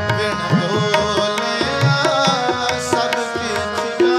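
Sikh kirtan music: a tabla plays a rhythm over steady held tones, and the low drum's pitch slides up and down on some strokes.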